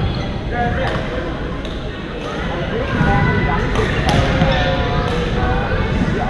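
Sharp racket strikes on shuttlecocks from several badminton courts at once, a crack every second or so, over a steady hubbub of voices in a large gym.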